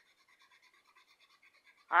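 Faint, uneven scratching of a coloured pencil on sketchbook paper as a small area is shaded in.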